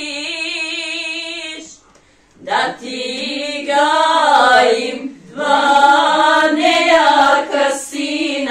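A group of women singing together, unaccompanied. A long held note breaks off just under two seconds in, and after a short pause the song resumes with wavering, ornamented lines.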